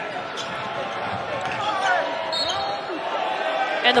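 A basketball being dribbled on a hardwood court, with the steady murmur of an arena crowd throughout.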